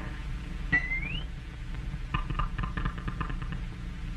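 Old cartoon soundtrack effects over a steady low hum: a click with a short rising whistle about a second in, then a quick run of squeaky clicks near the middle.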